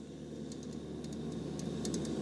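Fire Maple MARS radiant gas burner running turned down low, a faint steady hiss with light scattered ticks.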